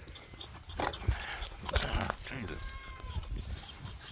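Goat kids feeding at milk buckets on a metal stand: a few short knocks and mouth sounds at the buckets, and a faint thin tone held for under a second past the middle.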